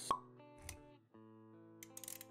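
Intro jingle with sound effects: a sharp pop right at the start and a low thud a little later, then held music notes with a quick run of clicks near the end.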